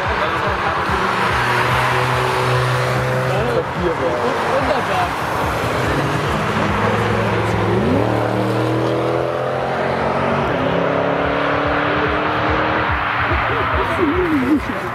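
Car engines running under throttle as cars drive past on a racetrack: a steady engine note, then about eight seconds in a second engine whose revs climb quickly and then hold steady.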